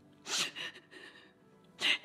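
A woman's short sniff about a third of a second in, then a sharp intake of breath near the end, in a tearful pause between sentences.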